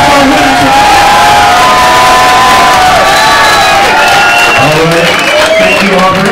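Audience cheering and shouting, many high voices whooping and screaming over one another, with a lower voice shouting in over it near the end.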